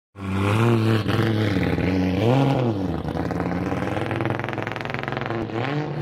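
Drift car's engine idling with a lumpy beat and a sharp throttle blip about two and a half seconds in. Later comes a fast, even rattle over the idle, then another short blip near the end.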